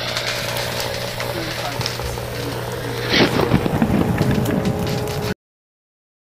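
The mixed soundtrack of a montage of short clips: a steady low hum under crackles and clicks, with a louder burst of noise about three seconds in. It cuts off suddenly near the end.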